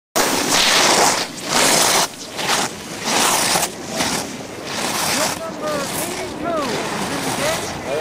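Loud gusts of rushing noise on the camcorder microphone during the first few seconds, then outdoor voices calling out over a steady hiss as a ski racer comes down the course.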